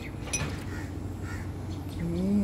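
A steel ladle clinks once against a steel bowl about a third of a second in, with a brief metallic ring, amid faint steady background noise with a low hum.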